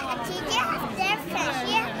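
A toddler's high-pitched voice babbling and chattering, with other voices in the room behind.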